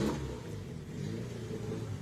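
Old Fiat car engine running with a steady low hum while the car shakes on its mounts.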